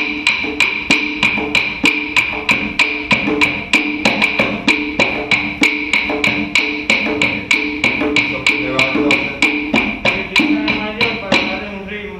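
A small hand drum played with the hands in a steady, fast rhythm of sharp, bright strokes, about three to four a second, with a high ring under them. A voice comes in over the drumming in the last few seconds, and the drumming stops at the end.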